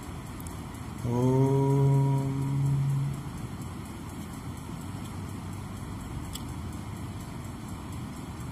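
A man's voice chanting one long held note for about two seconds, rising slightly at the start: the close of a chanted mantra. After it, only a steady low hiss of room noise.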